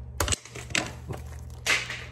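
Handling noise from a plastic-wrapped portable Bluetooth speaker: a few short clicks and knocks, then a brief crinkling rustle of the plastic wrap near the end.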